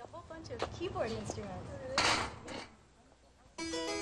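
Faint low voices and a brief hiss, then a harpsichord starts playing about three and a half seconds in, its plucked strings sounding a ringing chord.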